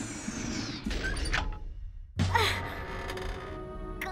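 Cartoon sound effects over background music: a falling whoosh, then after a short silence a sudden slam as a sliding metal hatch shuts, followed by a steady low hum.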